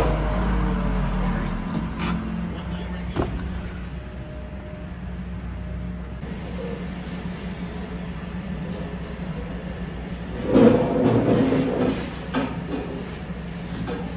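Tractor engine idling steadily, with a few sharp knocks in the first few seconds and a louder burst of noise lasting about a second and a half, about ten seconds in.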